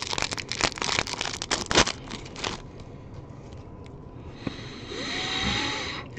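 Wrapper of a 2022 Bowman baseball card pack crinkling and tearing open in a quick run of crackles over the first two and a half seconds. Near the end there is a soft hiss of the cards being slid out of the pack.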